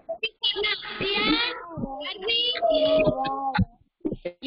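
A young child singing in a high voice, with a longer held note before the voice stops shortly before the end.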